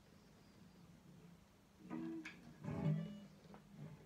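1967 Framus 5/132 Hollywood electric guitar played clean through a small amp: quiet at first, then a few sparse plucked notes and chords about halfway in, the loudest near three seconds, each left to ring out.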